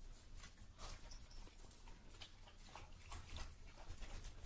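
Faint, scattered clicks and taps from small dogs at a steel bowl of dry kibble: crunching food and claws on a wooden floor, several small ticks a second.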